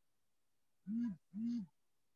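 A woman's quiet two-part closed-mouth "mm-hm" of assent from the listener in a conversation. Each hum rises and falls in pitch, the pair coming about a second in.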